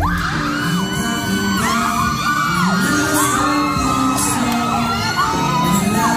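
Live pop song in a concert hall: a male vocal sings over the backing track, with fans screaming and cheering.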